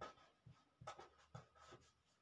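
Faint scratching of a marker pen writing on paper, a handful of short separate strokes.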